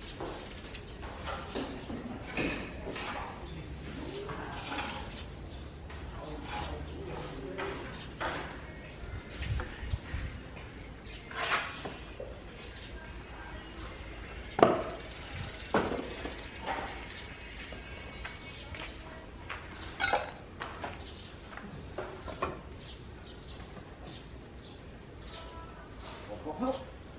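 Scattered clicks and light knocks from hand work on a building site, with two sharper knocks about a second apart near the middle, over a steady low background rumble.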